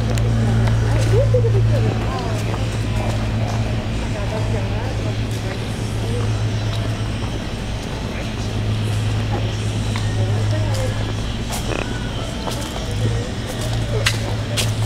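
A steady low hum, with faint voices in the background and a few light clicks.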